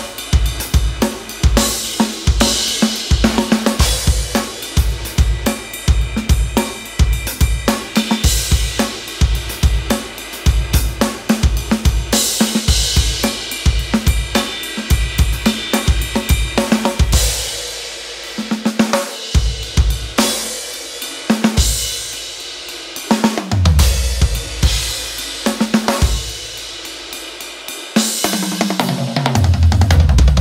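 Drum kit with bass drum, snare, hi-hat and cymbals playing an indie rock beat at 108 bpm, with no 808 percussion. The beat is steady for the first half, then thins out, with low tom hits falling in pitch near the end.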